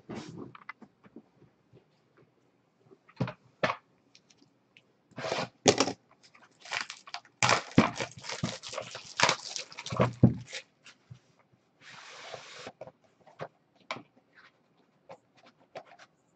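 Plastic wrap crinkling in dense bursts as a sealed trading-card box is unwrapped, among clicks and scrapes of the cardboard box being handled. A brief steady rasp comes later.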